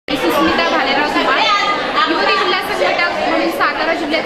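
Speech: a woman talking into interview microphones in a large hall.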